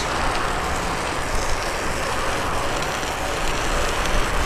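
Steady rushing noise of studded bicycle tyres rolling on a wet road, with wind on the microphone adding an uneven low rumble.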